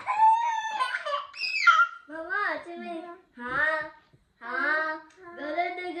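Young children's high voices laughing and calling out sing-song "ha ha" sounds, in several short rising-and-falling phrases with brief gaps between them.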